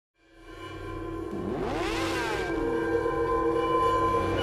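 Logo intro sound design: a sustained, layered tone swells up from silence, with pitch sweeps rising and falling through it about a third of the way in.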